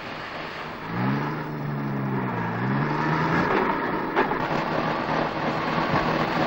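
A truck engine running. Its sound swells about a second in, the pitch rises and falls, and then it settles into a steady run.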